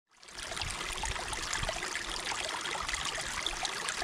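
Shallow creek water running and trickling over rocks, a steady rushing with small splashes. It fades in just after the start.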